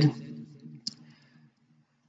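A pause in a man's speech: his voice trails off, a single faint click comes about a second in, and then there is silence.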